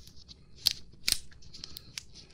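Latex surgical gloves being pulled onto the hands: light rubbery rustling with two sharp snaps about half a second apart.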